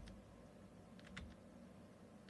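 Near silence: room tone, with two faint computer clicks about a second in.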